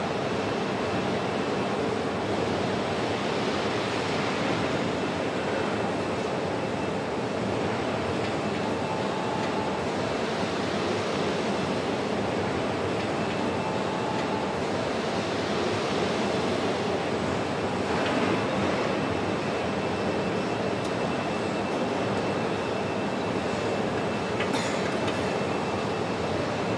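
Machine tools running on a factory floor, a steady even rushing noise with no clear rhythm.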